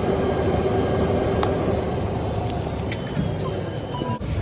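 Steady low rumble and hum of aircraft machinery heard inside an airliner cabin parked at the gate, with a steady tone that fades out about three seconds in and a few light clicks.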